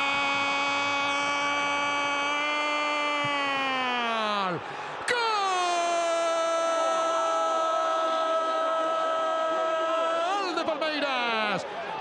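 Football TV commentator's drawn-out goal cry in Spanish, calling an equalising free-kick goal: one long note held for about four seconds that sags and breaks off, then taken up again and held for about six more seconds before falling away near the end.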